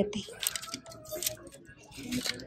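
Plastic clothes hangers clicking and scraping along a clothing rack rail as a hand pushes through them, in a few quick bursts of clicks in the first half.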